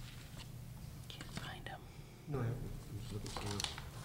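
Quiet murmured speech away from the microphones, a brief remark in the second half, over a steady low room hum.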